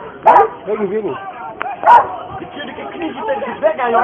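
Police dogs barking, the loudest sharp calls coming about a third of a second in and again near two seconds, amid men's shouting voices.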